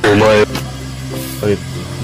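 A man's short, loud exclamation "Oh", then background music with a steady low drone and a few short notes.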